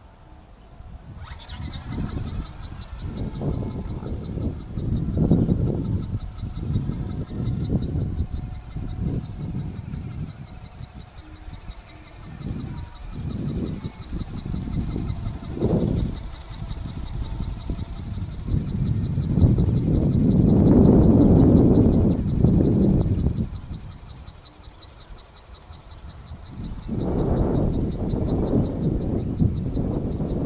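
Wind buffeting the camera microphone in gusts, rising and falling, loudest a little past the middle and again near the end. A steady high-pitched buzz starts abruptly about a second in and holds.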